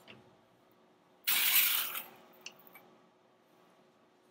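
A small plate slid across the laser engraver's metal vector grid table: one short hissing scrape under a second long, followed by two light clicks as it settles.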